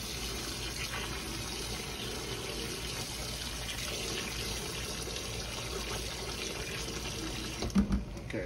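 Water running steadily from a kitchen faucet into a cooking pot, with a couple of clunks near the end.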